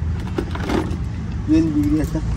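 Steady low hum of a motor vehicle's engine running, with brief bits of a person's voice and a short held vocal sound near the end.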